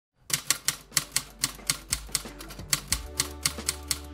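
Typewriter keystroke sound effect: a quick, slightly uneven run of sharp key clicks, about four to five a second, over soft background music, with a deep bass note coming in about three seconds in.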